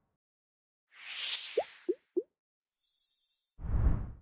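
Animated logo sting made of sound effects: a whoosh about a second in, three quick rising blips, a high fizzing hiss, then a low boom near the end.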